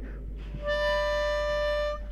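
A drawer being slid back into a chest of drawers, its runner squeaking out one steady musical note that starts under a second in and lasts a little over a second.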